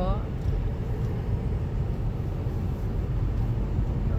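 Steady low rumble of a moving car's road and engine noise heard inside the cabin, with a voice trailing off at the very start.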